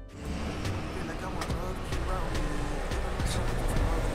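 A car running at low revs amid steady outdoor noise, with faint voices in the background.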